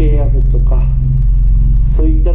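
A person speaking Japanese in the first part, over a steady low hum that runs unbroken underneath.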